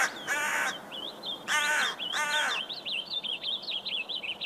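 A crow cawing three times, each caw falling in pitch, while a small bird twitters rapidly and without pause from about a second in.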